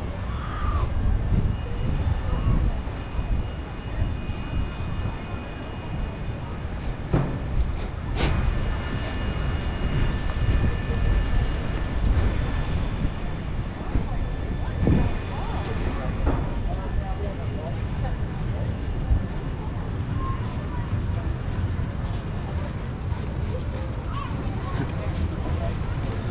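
Wind rumbling on the microphone of a moving camera, with faint voices of passersby and a couple of sharp clicks about seven and eight seconds in.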